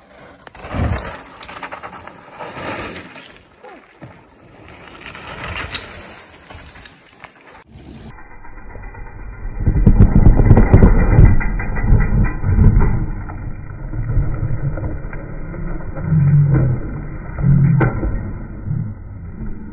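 Mountain bike tyres rolling over a dirt trail. After an abrupt cut, a bike carving through a loose dusty berm, with loud low noise, then a crash near the end: the rider and bike going down and sliding into the dirt with a couple of thuds.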